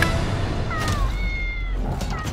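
A cat-like meow: two short falling cries, then one held high note, over a low rumble.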